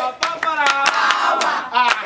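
Rhythmic hand clapping, about five claps a second, with voices singing over it.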